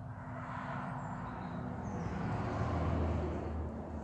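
A motor vehicle passing by, its deep engine and road noise swelling to loudest about three seconds in, then easing.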